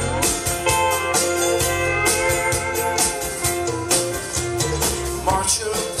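Live band music in an instrumental gap between sung lines: strummed acoustic guitar over a steady drum beat, with long held notes sustained above.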